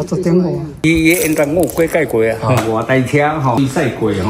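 Speech only: a person talking in short phrases, with no other sound standing out.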